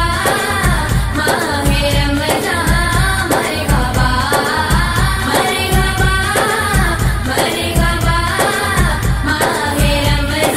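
A naat, an Islamic devotional song, sung with a steady low beat underneath.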